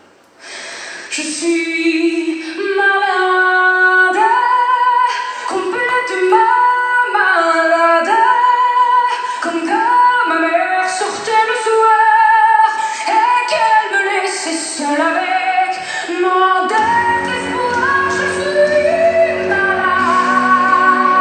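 A song with a woman singing sustained, gliding lines in French over instrumental accompaniment, coming in about half a second in after a brief pause; a lower bass part joins near the end.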